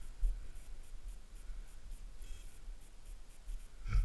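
Wind rumbling on an action-camera microphone, with a faint rapid ticking about five times a second and a single knock at the very end.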